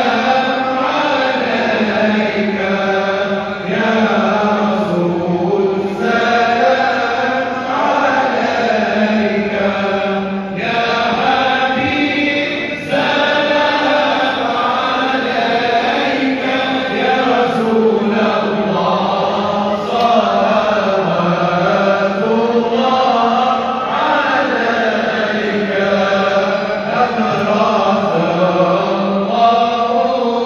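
Many voices chanting a melodic song together, continuous and without pause.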